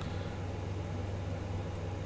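Steady low hum with a faint even hiss: background room tone.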